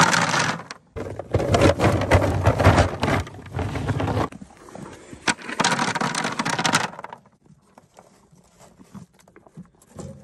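Cattle feed cubes poured from a bucket into a feed trough, clattering and scraping in bursts: a short one at the start, a longer one from about one to four seconds in, and another near six seconds, then quieter.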